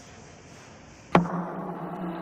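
Faint room noise, then about a second in a sudden loud hit that opens a held, steady chord: an edited impact sound effect leading into the vlog's intro music.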